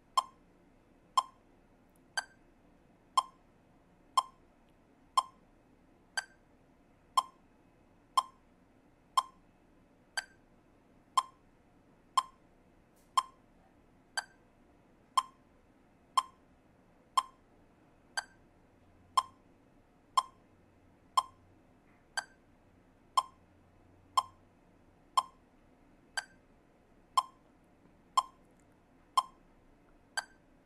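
Metronome clicking at 60 beats per minute, one click per quarter-note beat with no subdivision, and a higher-pitched accent click every fourth beat marking the start of each 4/4 bar.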